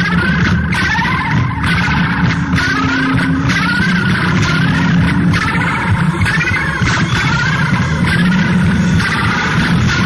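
Loud lo-fi noise recording: a continuous low drone with wavering, warbling tones above it, like a machine running, with no beat or melody.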